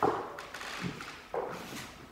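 Dance shoes stepping on a wooden floor: a few short taps and scuffs of a couple's feet as they dance, with a little room echo.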